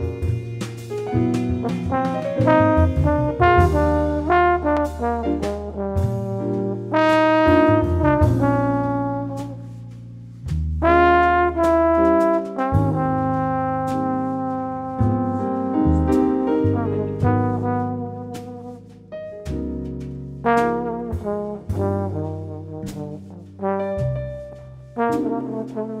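Slow jazz ballad: a trombone plays a solo line over a rhythm section with low sustained bass notes, with no vocals.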